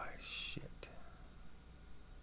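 A man's brief breathy, whisper-like hiss from the mouth, followed by two faint clicks, then only a faint steady low hum.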